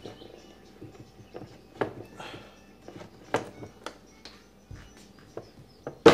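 Scattered light clicks and knocks of steel locking pliers and the wooden cabinet door being worked while a screw driven into a stripped plastic hinge dowel is pulled to draw the dowel out of its hole.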